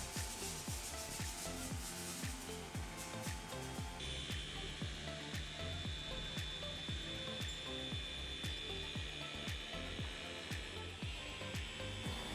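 Electric machine polisher running with a foam pad on car paint, under background music with a steady beat. The polishing is paint correction of factory and handling defects ahead of a ceramic coating.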